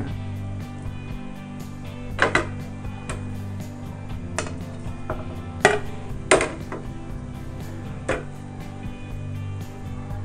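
Background music with a steady low tone, under about half a dozen sharp knocks and clinks from an aluminium pressure cooker pot as chopped vegetables are put into it.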